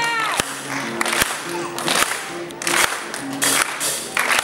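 A children's band playing live: acoustic guitar with drum and cymbal hits on a steady beat, with hand claps and a whoop from the audience at the start.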